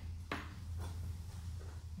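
Steel square-tube gate pickets knocked lightly against each other and the steel welding table as they are nudged into line: one sharp tap about a third of a second in, then a few fainter ticks, over a steady low hum.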